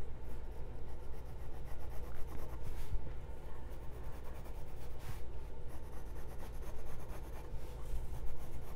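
Watercolor pencil scratching over a stretched canvas in many short back-and-forth strokes as petal outlines are sketched, with a couple of firmer strokes about three and five seconds in.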